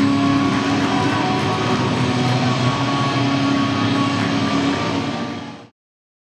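Steady background din of a sports-hall fight venue, with a few faint held tones running through it, fading away and cutting off shortly before the end.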